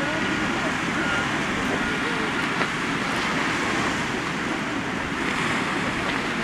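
Surf breaking and washing over a rocky shore: a steady rush of waves.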